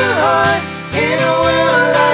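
Live acoustic pop song: men's voices sing long held notes in harmony over a strummed acoustic guitar, with a short break between two notes about half a second in.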